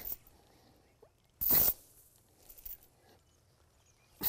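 A homemade chain crimper, a board weighted with heavy chain, drops onto dense cover crop, making a short rustling crash about a second and a half in as it flattens and crimps the stems, followed by faint rustles of plants and chain.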